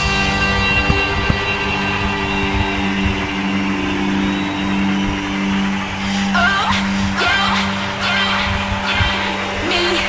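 Electronic soundtrack music: sustained chords over a pulsing low note, with a few short gliding notes about six seconds in.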